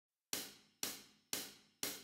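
Four faint, evenly spaced hi-hat ticks, about two a second: a count-in before the bass part.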